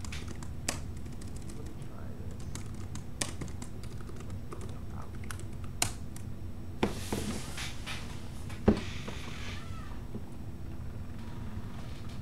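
Computer keyboard typing: irregular, scattered key clicks over a steady low hum.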